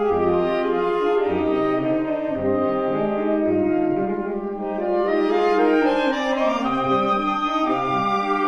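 A saxophone quartet playing live: held chords over a low part sounding short repeated notes, with an upper line climbing to a held high note about two-thirds of the way through.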